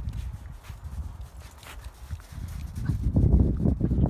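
Footfalls of dogs and people on snow, a run of irregular low thuds that grows louder near the end.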